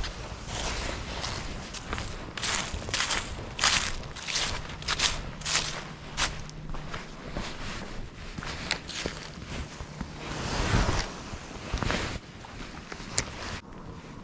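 Footsteps through dry fallen leaves, a step about every half second for the first half, then a few more steps later on, with a faint steady low hum in the background through the middle.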